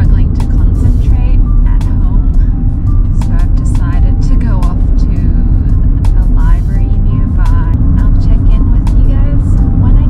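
Car being driven, heard from inside the cabin: a loud, steady low rumble of road and engine noise.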